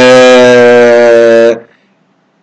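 A man's voice holding one long, level hesitation vowel, an 'eeeh' while he searches for the next word, ending about one and a half seconds in.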